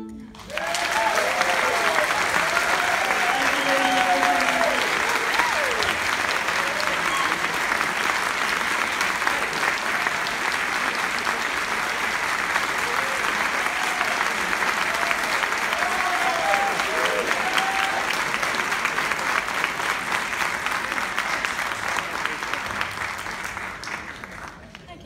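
Audience applauding, with a few voices whooping and cheering over the clapping early on and again midway; the applause thins out near the end.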